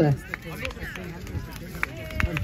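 Faint voices in the open air, with a few short, sharp clicks and clinks from a file of armoured re-enactors carrying polearms as they walk past.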